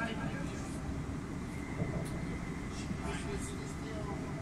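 Steady low rumble of a moving vehicle, with faint, indistinct voices and a thin steady high tone above it.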